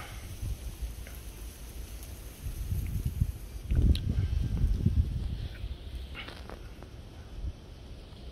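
Wind rumbling on the phone's microphone in gusts, strongest in the middle, with a few faint ticks from handling.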